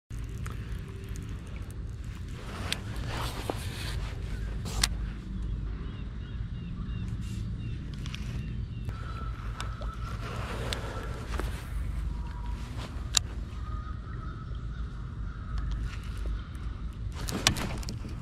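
Baitcasting reel being cast and reeled in from a kayak, with a few sharp clicks and knocks over a steady low rumble.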